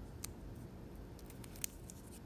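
Faint clicks and light rustling of plastic-sleeved trading cards being handled as one card is slid off the front of the stack. There is one click early, then a short run of clicks in the second half, the sharpest about three-quarters of the way through.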